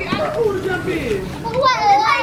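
High-pitched voices of young children calling out at play, wavering in pitch, louder from about one and a half seconds in.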